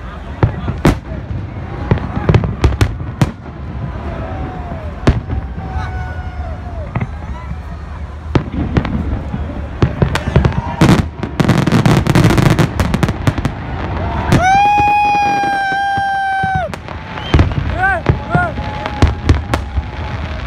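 Aerial fireworks bursting overhead: a string of sharp bangs and crackles, densest about ten to thirteen seconds in, over crowd voices. Near the three-quarter mark a horn sounds one long steady note for about two seconds.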